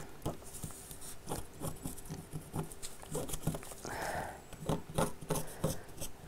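A pen scratching on fabric in many short, faint strokes as it traces around the edge of a paper template.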